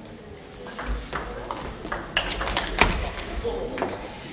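Table tennis ball struck back and forth with paddles and bouncing on the table during a rally: a quick run of sharp clicks that comes thickest about two to three seconds in and stops just before the end.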